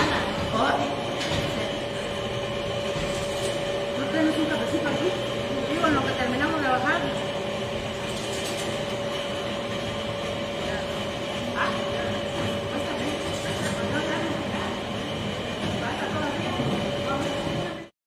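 Freight elevator running as its wire-mesh cage descends: a steady mechanical hum with a constant whine. Faint voices a few seconds in, and the sound cuts off suddenly at the end.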